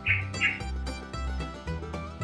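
Background music: a light plucked-string tune over a low bass line.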